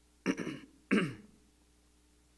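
A man clearing his throat twice into a close microphone, two short rough bursts, the second sliding down in pitch.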